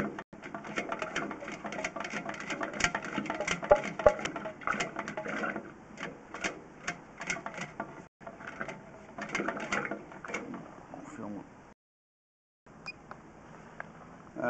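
Dense, irregular mechanical clicking and rattling. It cuts out for about a second near the end, then a faint hiss follows.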